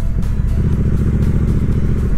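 Triumph Bonneville T120's 1200 cc parallel-twin engine running steadily as the bike cruises along.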